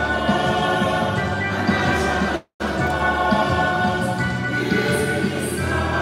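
A small church choir singing a hymn together to electronic keyboard accompaniment. The sound cuts out completely for a moment about halfway through.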